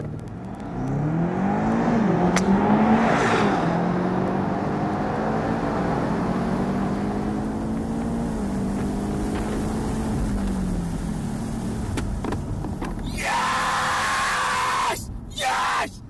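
A BMW sports car's engine accelerating hard, its note rising with brief dips at the gear changes, then holding a steady pitch at speed and easing off near the end. A single sharp click a couple of seconds in fits the driver striking the ball, and a short burst of noise follows near the end.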